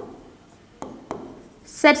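Pen tip tapping on a writing board as a word is written by hand: three short sharp taps, one at the start and two close together about a second in.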